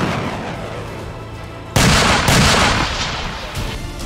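Heavy weapons firing in combat footage: a sudden loud blast about two seconds in, a second one half a second later, each trailing off in a long rumble, as the rumble of an earlier shot fades at the start.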